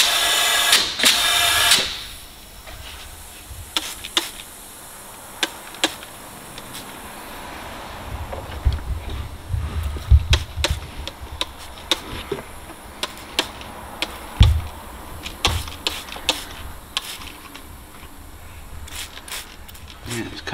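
A loud hiss of air for the first couple of seconds from the intake pipework held under boost-leak-test pressure, then scattered clicks, light knocks and a few dull thumps from a trigger spray bottle and hands working over the silicone boost hoses and clamps while searching for the leak.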